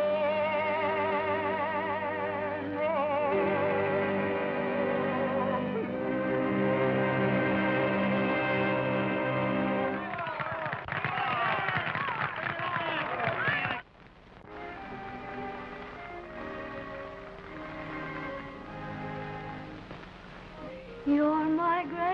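A man holds the final note of a song with a wide vibrato over an orchestra, ending in a dense orchestral flourish. At about fourteen seconds the sound cuts off sharply and quieter orchestral background music follows.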